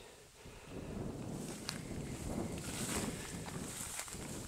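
Footsteps and wheat stalks swishing while someone walks through a ripening wheat field, a steady rustle that starts about half a second in.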